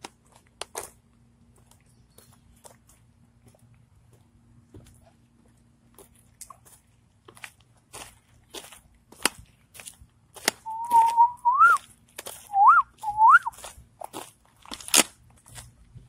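A person whistling a few short notes, a held note that rises at its end, then two quick upward swoops, about two-thirds of the way through. Scattered light clicks and scuffs run underneath.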